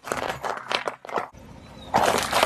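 A car tyre rolling over a row of plastic-wrapped freezer ice pops, crunching and popping them one after another in a rapid crackling run for about a second, then dying away.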